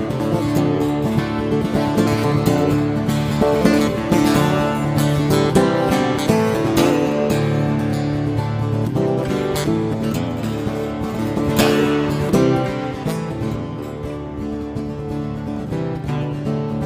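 Background music led by strummed acoustic guitar, with a steady beat.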